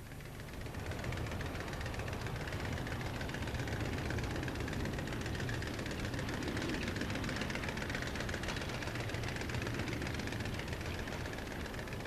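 Steady industrial machinery noise, a low hum under a dense hiss, that fades in about a second in.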